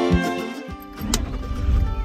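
Folk-style background music with fiddle and guitar fades out in the first second. It is followed by a low, steady engine rumble heard from inside a Toyota four-wheel drive's cabin, with a sharp click about a second in.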